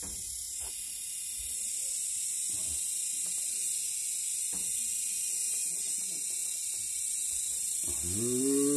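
A steady high-pitched hiss with a man's voice faint and broken underneath.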